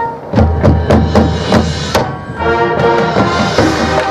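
High school marching band playing: the held wind chord breaks off and the percussion strikes a run of loud accented hits with deep bass drum, about two to three a second, before the brass and woodwinds come back in with a sustained chord about halfway through.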